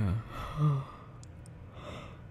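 A man's sleepy, breathy sigh, voiced for a moment about half a second in, followed by a soft breath near the end.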